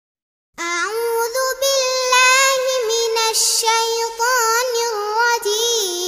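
A girl's high voice singing an unaccompanied ghazal melody with ornamented, wavering turns, starting about half a second in.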